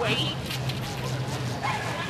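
A dog barking with short, high yips in the first second, alongside a handler's shouted "wait, wait!" over a steady low hum.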